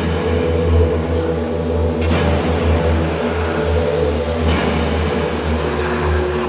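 Electronic witch house/speedcore track in a sparse passage with no beat: a steady, low, engine-like drone with held higher tones above it. A new held tone comes in after about four and a half seconds.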